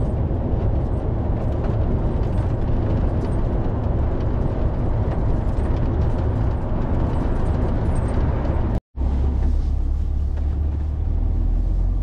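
Steady engine and road noise inside the cab of an articulated lorry at motorway speed. About nine seconds in, the sound drops out for an instant at a cut and comes back as a smoother, steadier low hum.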